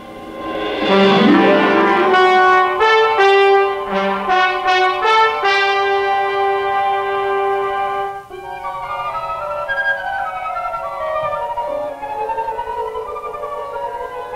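Orchestral film score: a brass fanfare swells in about a second in and holds bright, sustained chords. Near eight seconds it drops to a softer, quieter passage with wavering, gliding lines.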